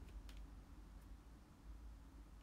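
Near silence: room tone with a low hum and a few faint clicks in the first second.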